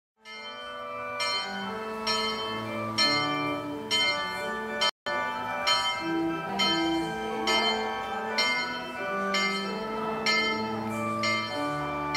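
Church bells ringing a sequence of notes, about two strikes a second, each note ringing on under the next. The sound drops out for an instant about five seconds in.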